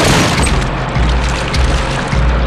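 Dramatic film score with deep booming pulses about once a second. A loud rushing sweep comes right at the start.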